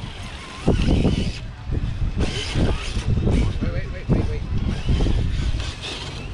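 People talking indistinctly over a low, uneven rumble on the microphone.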